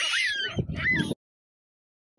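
Baboons giving high calls that glide up and down, several overlapping, which stop abruptly just over a second in.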